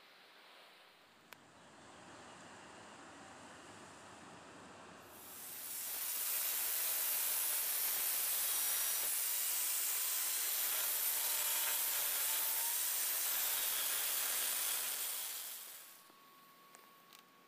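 Electric angle grinder grinding the steel of a car's body in the engine bay: a harsh, steady noise that starts about five seconds in and fades out just before the end, after a few seconds of softer noise.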